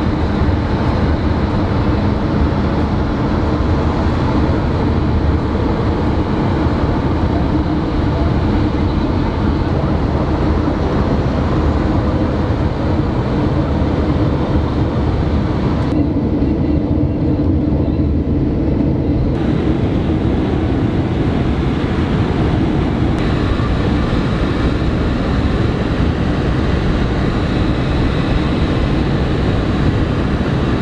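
Steady road and tyre noise of a car travelling at highway speed, heard from inside the moving car as a continuous low rumble with hiss above it. The hiss briefly dulls about halfway through.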